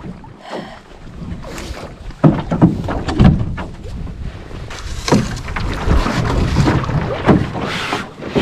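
A canoe being boarded and pushed off a rocky shore: irregular knocks and scrapes of the hull against rock, with wind on the microphone.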